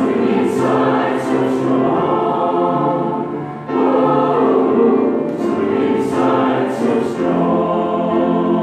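Mixed-voice SATB choir singing sustained chords, with the singers' "s" consonants landing together in crisp hisses. Near the middle the sound briefly falls away, then the next phrase comes in together.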